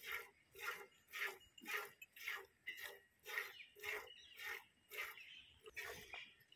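Hand milking a cow: jets of milk squirting into a steel pot, at an even rhythm of about two squirts a second as the hands alternate on the teats.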